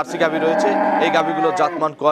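A Jersey dairy cow mooing: one long, steady call lasting about a second and a half.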